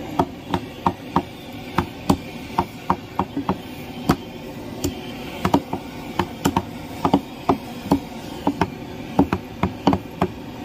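Steel meat cleaver chopping mutton on a wooden log chopping block: sharp chops at an uneven pace, about three a second.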